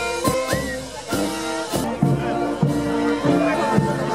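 Brass band playing on the street: horns holding notes over regular bass drum and cymbal beats, with crowd voices mixed in.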